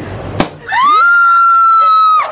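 A champagne cork pops out of the bottle with a single sharp crack, followed at once by a woman's long, high-pitched scream that rises and then holds one note.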